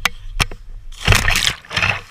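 Two sharp knocks, then a person jumping into water less than a metre deep with a loud splash about a second in, and a second, shorter splash just after.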